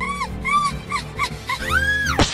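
High-pitched whimpering: several short whines that rise and fall, then a longer, higher one near the end, over background music.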